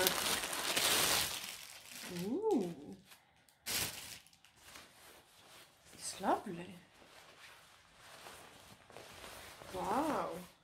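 Packaging rustling and crinkling as a parcel is opened, with one sharp snap a little under four seconds in. Three short wordless voice sounds that rise and fall in pitch come between the handling noises.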